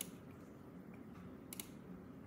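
Two faint computer mouse clicks about a second and a half apart, each one selecting a tab in a settings window, over quiet room tone.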